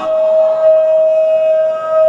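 A man's voice holding one long, steady, high note, drawn out and loud, with a slight glide where it ends.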